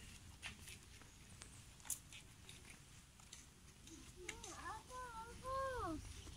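Quiet outdoor ambience with a few faint clicks, then a voice making short, rising-and-falling sounds for the last two seconds.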